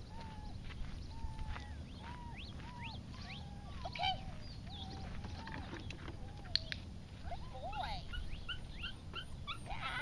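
A dog whining in repeated short, high calls, about two a second, which come quicker near the end. A single sharp click sounds about six and a half seconds in.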